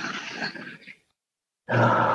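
Voices over a video call: a woman's voice trails off into a fading noisy tail, the sound cuts to dead silence for a moment, and then a man's low voiced sound begins near the end as he starts to speak.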